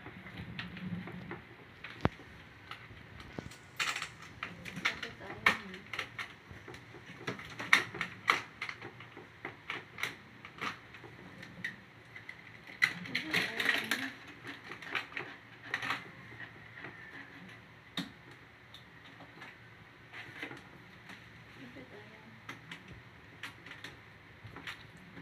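Irregular clicks, knocks and rattles from a makeup trolley case being handled: its key in the lock, metal latches and hinged trays clicking and clattering, in bunches of quick taps with short pauses between.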